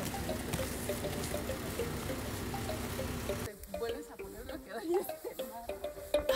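Indistinct voices of people talking over a steady hiss; the hiss cuts off abruptly about three and a half seconds in, leaving quieter, scattered voices.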